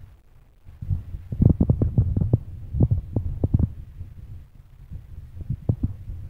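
Handling noise close to the microphone as a turban cloth is pulled and wrapped: a quick run of low, muffled thumps and rubbing in the first half, and a few more near the end.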